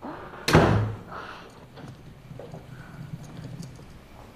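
A door shutting with one loud thud about half a second in, followed by a faint low rumble.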